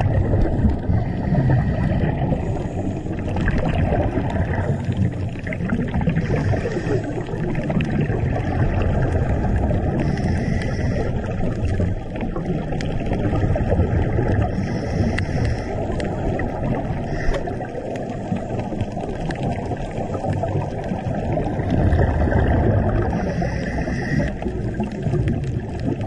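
Underwater sound picked up by a camera below the surface: a dense, muffled rumble of moving water, with bursts of bubbling every few seconds from the scuba divers' regulator exhaust.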